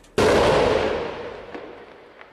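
A single heavy artillery blast: a sudden loud bang about a fifth of a second in, echoing and dying away over about a second and a half.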